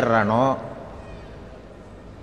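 A man's voice drawing out the end of a word, with its pitch sliding, for about half a second, then a pause of quiet room tone.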